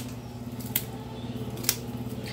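Two light clicks of dessert-making utensils and dishes being handled, about a second in and near the end, over a steady low hum.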